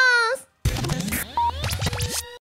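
A woman's drawn-out closing word falls in pitch and ends. About half a second in, a radio-show jingle starts: a record-scratch effect over electronic music, with sweeping rising and falling tones.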